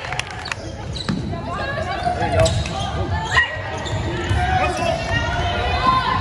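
Basketball dribbled on a hardwood gym floor as players run the court, under the chatter and calls of spectators and players.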